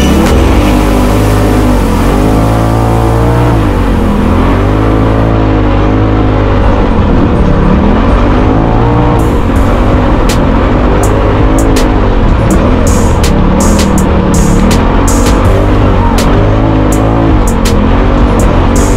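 Polaris RZR Pro XP's turbocharged twin-cylinder engine revving up and down repeatedly as the side-by-side is driven over sand dunes, with background music.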